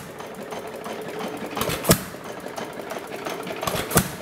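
A 1½ hp Gade air-cooled hit-and-miss engine running: a steady rapid clatter from its valve gear and flywheels, with a sharp firing bang about two seconds in and another near the end. Between the bangs it coasts without firing, the governor letting it fire only when speed drops.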